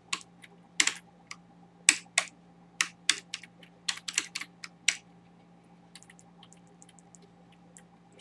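Computer keyboard being typed on: irregular keystrokes, several a second for about five seconds, then only a few fainter clicks near the end.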